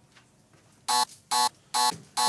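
Near silence, then three short, identical electronic buzzer tones less than half a second apart, starting about a second in.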